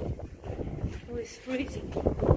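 Wind buffeting the phone's microphone as a low, uneven rumble, with a few short faint voice sounds about a second in.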